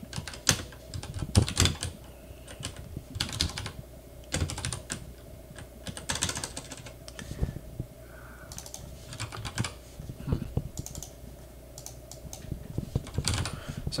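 Typing on a computer keyboard: irregular bursts of key clicks with short pauses between them.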